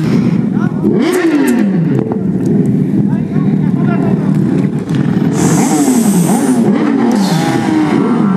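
Sport motorcycle engines revving, the pitch climbing and falling again and again as the throttle is blipped. A hissing noise joins in for about a second just past the middle and again briefly near the end.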